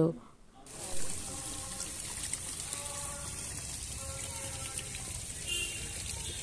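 Steady splashing trickle of a small artificial waterfall in a Christmas crib display, starting about a second in after a brief hush.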